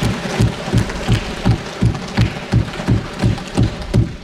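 Members of Parliament thumping their wooden desks in applause: many hands pounding together in a steady beat of about three strokes a second. In the Lok Sabha, desk-thumping is the customary sign of approval for an announcement.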